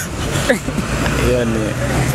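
People laughing and vocalising briefly over the steady low rumble of a motor vehicle engine running close by.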